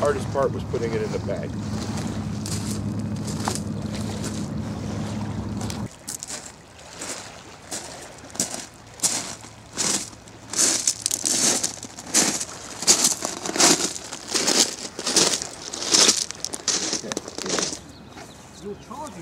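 Footsteps crunching on beach pebbles at a walking pace, about one and a half steps a second, loud and sharp. Before them, in the first six seconds, a steady low hum.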